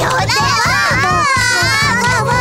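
Several high-pitched cartoon character voices chattering and exclaiming over one another, without clear words, over background music with a steady low beat.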